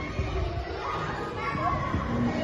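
Children playing in an indoor play hall: an indistinct mix of children's voices and chatter with low rumbling movement noise.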